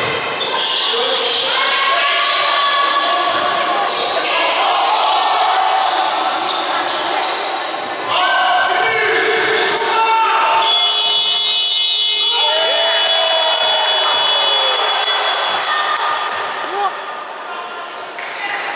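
Basketball game in a sports hall: a ball bouncing on the wooden court amid shouted calls from players and the crowd, echoing in the large hall.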